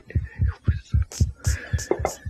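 An exaggerated heartbeat sound effect, thumping low and evenly about five times a second, used in the comedy sketch to make a hangover's pounding pulse sound loud.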